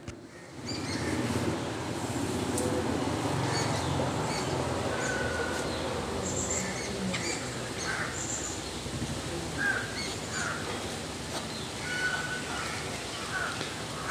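Birds chirping in the background, short scattered calls over a steady background rush.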